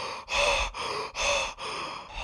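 A man breathing hard and gasping in shock: about five quick, noisy breaths in and out.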